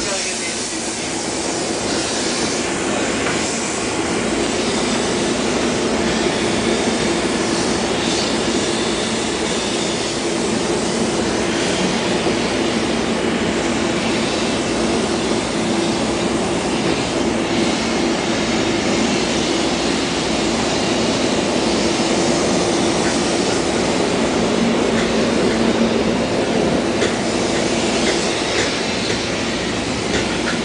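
Bed bug heat-and-steam treatment equipment running steadily: a constant machine hum under a loud, even hiss.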